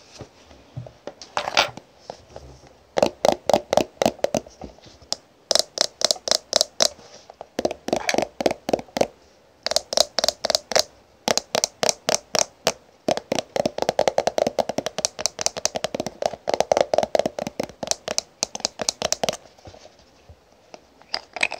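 Fingernails tapping on a plastic BB cream squeeze tube and its cap. A few scattered taps come first, then quick runs of sharp clicks, several a second, broken by short pauses.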